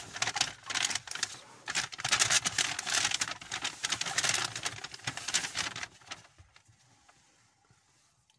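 Paper gift bag rustling and crinkling as hands rummage through it and pull out groceries, a dense crackling that dies away about six seconds in.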